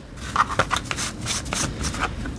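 Irregular scratchy rubbing and handling noise as grime is cleaned off a corroded USB stick, starting about a third of a second in.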